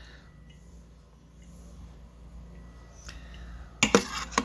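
Quiet room with a low steady hum. Just before the end come a few sharp knocks, a metal slotted spoon clinking against a stainless steel Instant Pot liner as curds are scooped from the whey.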